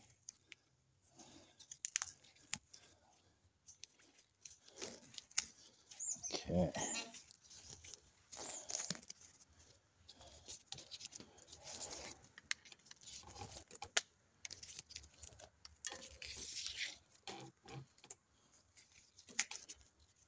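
Tape that holds brake cables to a bicycle drop handlebar being peeled and pulled away, in short, intermittent bursts of tearing and crinkling with small handling clicks.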